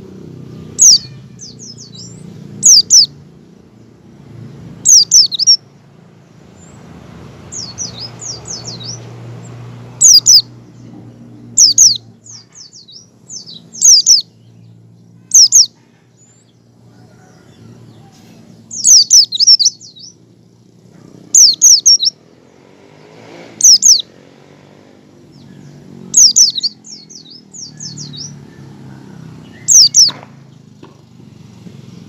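White-eye (pleci) giving short, high, down-slurred chirps in quick clusters of two to four notes, a cluster every two seconds or so: the 'ngecal' call used as a lure to get other white-eyes to open up and sing. A faint low hum runs underneath.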